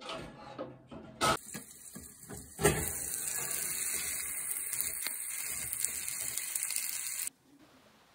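A few clatters and knocks, then a kitchen tap running steadily into a stainless steel sink for about four and a half seconds before it is shut off abruptly.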